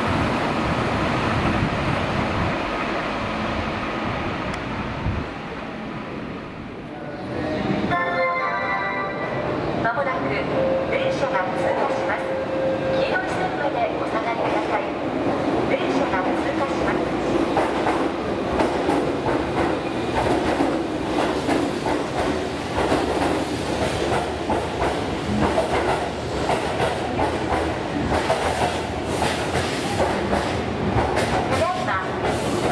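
A Keihan 8000 series electric train running into a station on curved track, with a steady high whine over the running noise. About 8 seconds in, the sound changes to a busy station platform: a short series of tones, then voices over the running of a train.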